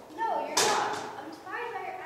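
Children's voices calling out, sliding in pitch and without clear words, with one sharp thump about half a second in that is the loudest sound.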